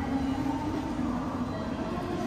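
Steady hubbub of a crowded railway station concourse: many commuters walking, with a continuous low rumble under the crowd noise.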